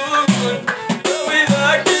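An Amazigh-language song: drums and percussion keep a steady beat under a melody, with singing.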